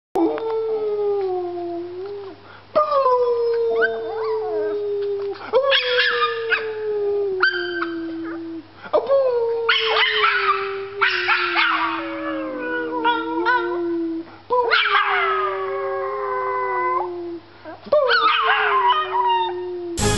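A small puppy howling: a run of about six long, drawn-out howls, each starting sharply and sliding slowly down in pitch, with a new howl every few seconds.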